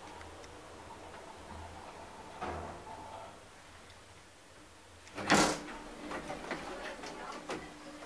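KONE traction elevator car running with a faint steady hum. About five seconds in, its automatic sliding doors open with a loud clunk, and voices come in from outside.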